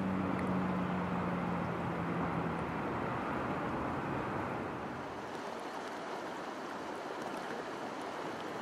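Steady rush of flowing stream water, with a low steady hum underneath for the first two or three seconds.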